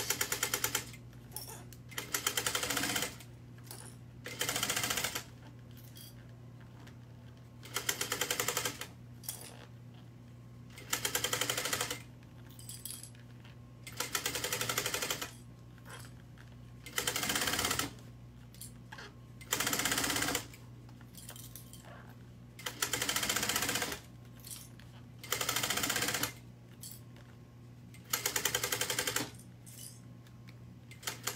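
Industrial sewing machine stitching in short runs of about a second each, about eleven times, stopping and starting as a bag strap is fed through at a long stitch length, over a steady low hum.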